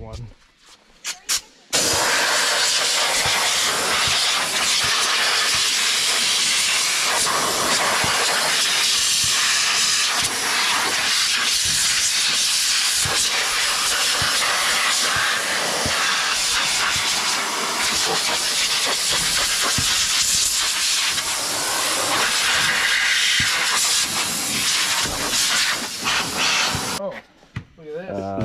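Compressed-air blow gun blowing off a race car's engine bay. A loud, steady hiss starts about two seconds in, wavers as the nozzle moves, and stops about a second before the end.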